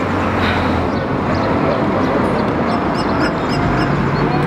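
Steady rushing outdoor noise, with a low engine hum for about the first second and short, high bird chirps scattered over it.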